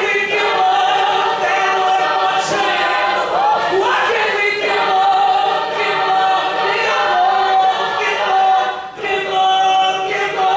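Mixed-voice a cappella group singing: the ensemble holds sustained chords while a male lead vocalist sings over them, with a short break near the end.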